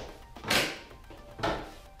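Three short, noisy rustling bursts, one near the start, one about half a second in and one about a second and a half in, as a man lets go of the climbing holds and swings his weight onto a rope-and-carabiner rig hung from a neodymium magnet. Background music plays underneath.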